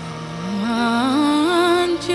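Worship song: a female voice sings a long note that climbs step by step and wavers as it is held, over steady backing music, growing louder about half a second in.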